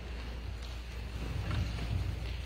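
Low rumble with a few faint bumps near the end, handling noise from a hand-held phone camera being panned, over the room tone of a quiet church sanctuary.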